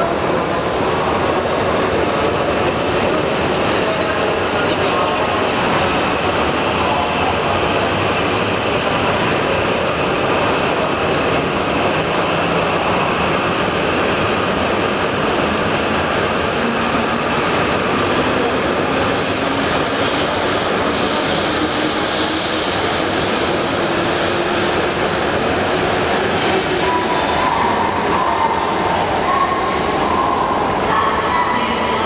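Tohoku Shinkansen Hayabusa train pulling out of the station and accelerating past the platform: a steady rush of wheel and running noise, with a whine that rises slowly in pitch through the second half as it gathers speed.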